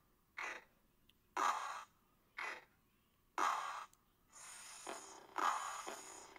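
A slowed-down voice repeating the letter C's hard /k/ sound as breathy 'kuh' sounds. They come in pairs, a short one and then a longer one, about every two seconds, with near silence between.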